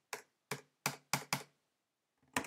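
Five separate computer keyboard keystrokes, crisp clicks a fraction of a second apart, as a terminal listing is paged on and a short 'cd' command is typed and entered.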